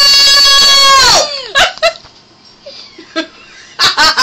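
A woman's high, sustained howling wail in imitation of a dog crying, held on one pitch for about a second and a half before dropping off, followed by a couple of short yelps. A burst of laughter starts right at the end.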